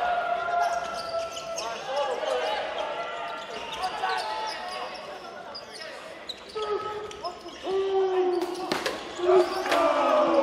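Basketball being dribbled on a hardwood gym floor while players and benches call out, their voices echoing in the hall. A few sharp bounces come near the end.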